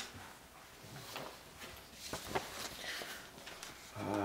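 Faint rustling and shuffling of paper sheets being handled on a table, with a brief click a little past the middle.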